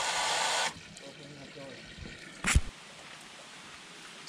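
Garden-hose water jet spraying inside a Rhino Blaster clear sewer-hose elbow with a steady hiss, shut off at the elbow's valve less than a second in. After that only faint trickling of draining water, and a single knock about two and a half seconds in.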